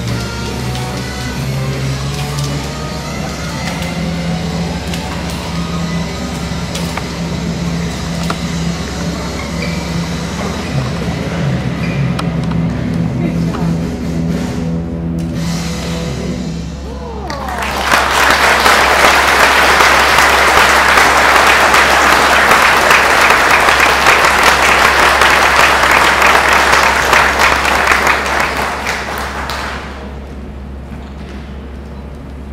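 Background music with a steady bass line plays for the first half, then stops; about a second later an audience bursts into loud applause that lasts about ten seconds and tails off near the end.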